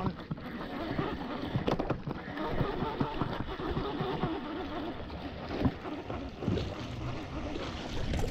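Wind on the microphone and water noise around a boat, with irregular small knocks and clicks from a baitcasting reel being cranked as a hooked bass is reeled in.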